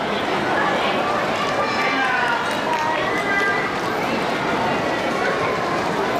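Mostly speech: a trainer's voice over the public-address loudspeakers above a steady background of audience noise.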